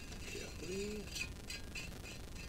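A guitar tuning machine on a 1967 Gibson ES-335 headstock is turned by hand to wind on a new D'Addario XS coated string. A few small clicks and scratches of string and tuner come in the second half.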